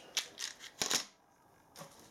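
Small plastic box of carbide parting-off tips being handled: a few short clicks and light rattles within the first second, the tips and the plastic case knocking together.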